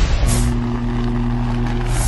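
Sound design for an animated logo intro. A whoosh comes about a quarter second in, then a steady low drone holds, and another whoosh comes near the end.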